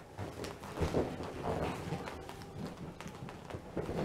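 Soft, irregular thumps and rubbing of a toddler climbing and sliding on an inflated vinyl bouncy house.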